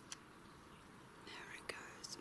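Faint whispering voice in the last half second over low hiss, with sharp clicks just after the start and near the end.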